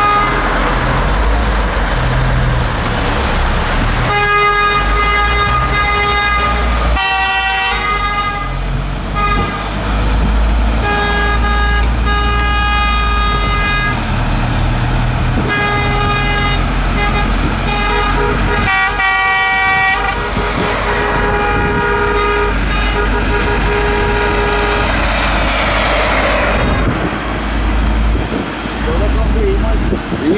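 Car horns honking in repeated toots of a few seconds each from about four seconds in, with at least two horns of different pitch, over the low rumble of a moving car.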